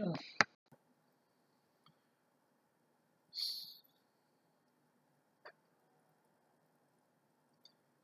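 Near silence: room tone, broken by a sharp click just after the start, a short faint hiss about three and a half seconds in, and a faint tick about two seconds later.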